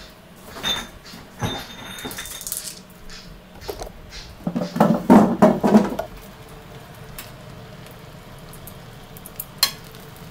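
Kitchen pots and utensils clattering: a few light clinks early, one with a brief ring, then a burst of louder knocking and clattering about five seconds in, and a single sharp click near the end, over a low steady hum.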